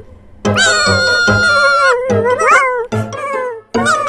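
Cartoon kitten character making high, meow-like cries: one long held cry about half a second in, then shorter, wavering ones. Underneath is children's background music with a steady low beat.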